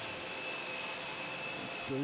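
Steady jet-turbine whine on an airport apron: several steady high-pitched tones over an even rushing noise. A short voice sound comes just before the end.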